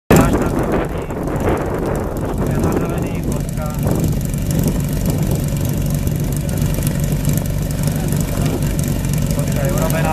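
Portable fire pump's engine idling steadily before a competition run.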